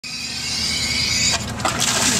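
A homemade air-powered PVC displacement water pump: a steady hiss with a low hum builds for just over a second, then breaks abruptly into splashing as the pump's discharge pipe gushes water back into the tub.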